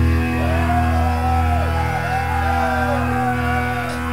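Live punk rock band with no drums: electric guitar and bass hold one ringing chord, with a higher tone waving up and down above it.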